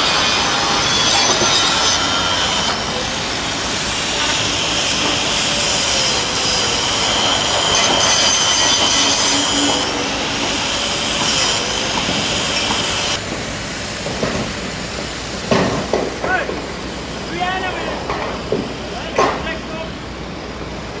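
Demolition work with heavy machinery: metal squealing and scraping over the running of the machines, louder for the first two-thirds, then a few sharp knocks near the end.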